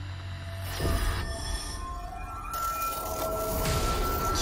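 Dark electronic soundtrack with sound effects: a low hum, a hit just under a second in, then a steady high tone held from about halfway through.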